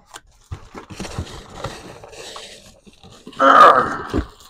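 Rustling and crinkling of cardboard, tissue paper and plastic wrapping as a heavy item is handled inside its shipping box. Near the end comes a short, louder pitched sound, like a grunt of effort.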